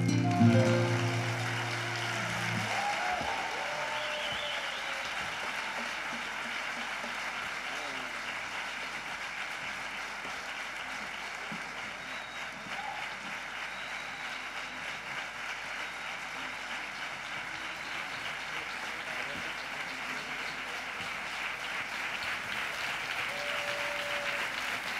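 An acoustic guitar's last chord rings out for about two seconds, then a theatre audience applauds steadily.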